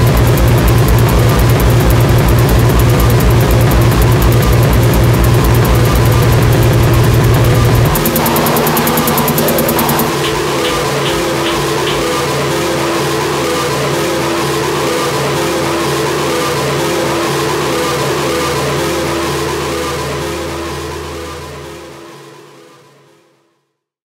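Live electronic techno-noise music from a modular synthesizer and a monome grid running mlr on norns: a hard, pulsing low beat under dense noise. About eight seconds in, the beat drops out, leaving droning tones and noise that fade to silence near the end.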